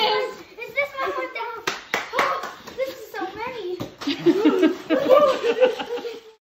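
A child's excited exclamations and laughter, with a few sharp clicks and rustles from unpacking a cardboard box holding a bag of plastic dominoes.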